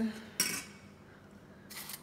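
Metal spoon clinking and scraping against a stainless steel saucepan holding chicken broth, twice: once about half a second in and again near the end.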